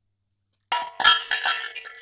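Hand tools, a battery and a small glass cup set down one after another into a tray, clattering and clinking with a short metallic ring. It starts a little under a second in.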